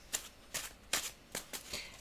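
A deck of tarot cards being shuffled by hand: about five short card rustles, spread out, as the cards are passed from one hand into the other.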